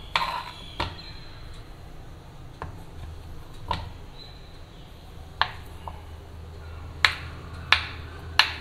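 Kitchen knife cutting a block of green olive-oil soap base into cubes, the blade striking a plastic cutting board in sharp, irregular clicks, about seven in eight seconds.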